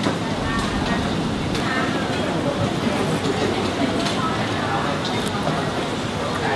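Busy restaurant ambience: a steady background noise with other diners' indistinct chatter, and a few light clinks of a metal fork and spoon against a ceramic plate.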